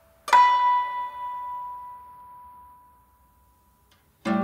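AI-generated guzheng music: a single plucked zither note about a third of a second in, ringing out and fading slowly over about three seconds.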